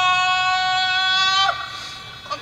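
A male Quran reciter's voice holding one long, steady high note on a prolonged vowel at the end of a phrase of melodic recitation, breaking off about a second and a half in.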